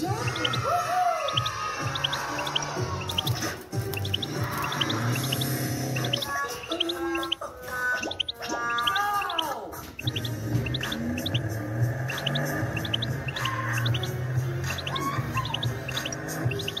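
A caged European goldfinch singing a long run of quick, high twittering chirps, with music playing alongside.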